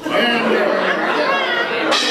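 Several people talking at once: overlapping chatter in a large room.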